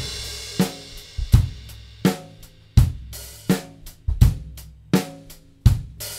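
Drum kit played in a slow, steady beat: a cymbal crash with a bass drum hit opens it, then a hit about every 0.7 seconds, with bass drum and snare alternating under a ringing cymbal.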